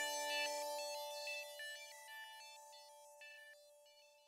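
The tail of an electronic song. The beat and bass have stopped, and a few held synthesizer tones and a scattering of short, high notes fade away.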